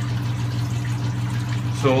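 Steady low hum of a running water pump, with a faint wash of moving water. Speech comes in near the end.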